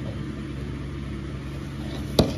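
A steady low hum, unchanging throughout, with no other events.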